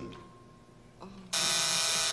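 Game-show buzzer giving a harsh, loud buzz for most of a second near the end, signalling a wrong answer. Before it, a faint steady high tone fades out about a second in.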